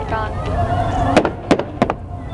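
Fireworks going off: several sharp bangs in the second half, over a steady low rumble.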